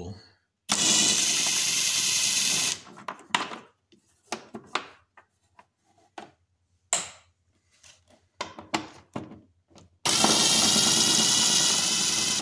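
Cordless power driver spinning out 8 mm bolts on the engine's air intake, in two runs of about two seconds each, one soon after the start and one near the end. In between come short clicks and knocks from handling the tool and the loosened bolts.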